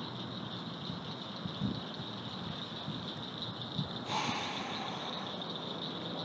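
Quiet background with a steady high-pitched insect drone, like crickets. A short hiss comes about four seconds in, with a couple of faint low thumps before it.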